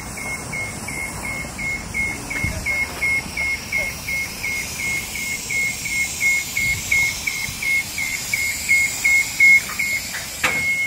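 Scissor lift's descent alarm beeping as the platform lowers: a steady run of short, high-pitched beeps at one pitch, about three a second.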